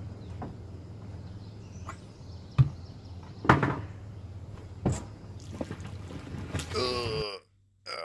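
Wheeled mini boat being handled and pushed on a concrete launch ramp: a few sharp thumps and knocks, the loudest about two and a half seconds in, over steady outdoor background noise. Near the end a brief shout is heard, then the sound cuts off suddenly.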